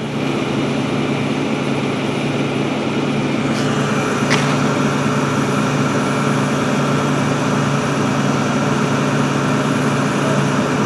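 Tow truck engine idling steadily, a low even drone, with two short clicks about four seconds in.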